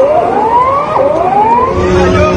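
Tsunami warning siren sounding: an electronic tone that sweeps up in pitch and drops back about once a second.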